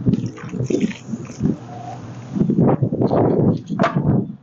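A man making wordless vocal sounds, loudest in the second half. Short hissy shakes in the first second come from seasoning being shaken out of a bottle onto a tray.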